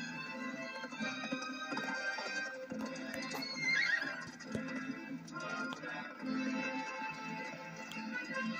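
Film soundtrack music from an animated film, played through a CRT television's small speaker. A horse neighs about three and a half seconds in, over the music.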